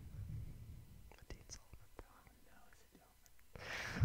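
Quiet room with faint whispering and breathy voices, and a few soft clicks. Louder talk starts just at the end.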